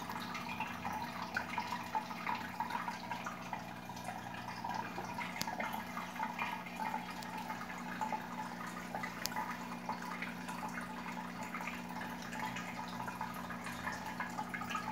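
Aquarium hang-on filter running: water trickling and splashing steadily into the tank in a fine, irregular patter, over a low steady hum.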